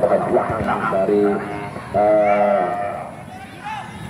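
A man's voice holding two long, drawn-out syllables, a short one about a second in and a longer, louder one about two seconds in, over general background noise.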